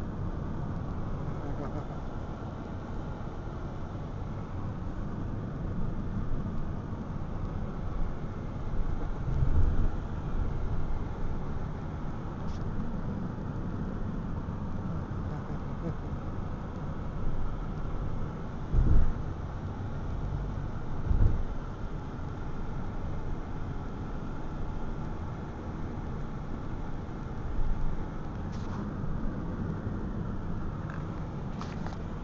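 Steady road and engine rumble heard from inside a moving car's cabin, the Ford Freestyle, with a few short low thumps spread through it.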